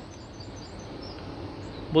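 Faint steady background noise in a pause, with no distinct event. Speech begins right at the end.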